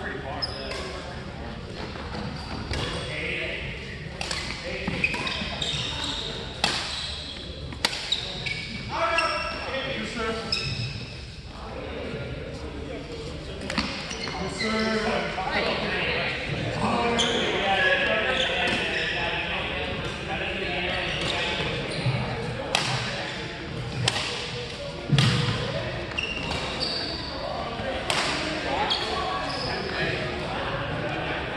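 Badminton doubles rally: rackets hitting the shuttlecock in a string of sharp cracks at irregular intervals, with shoes squeaking on the court floor. The hall's echo trails after each hit, and voices join in the middle of the rally.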